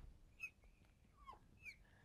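A few short, faint squeaks of a marker on a glass lightboard as a box is drawn around a written answer.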